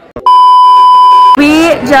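Censor bleep: one loud, steady beep edited into the soundtrack, lasting about a second and cutting off abruptly before voices resume.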